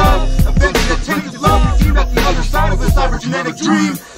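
Underground hip hop track: a rapped vocal over a beat of drums and deep bass, the bass dropping out briefly a couple of times.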